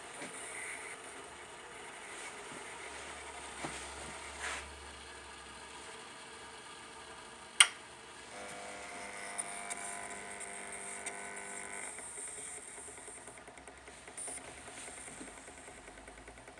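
A single sharp click at the gas stove's control knob about seven and a half seconds in, followed by a small motor whining steadily for about three and a half seconds.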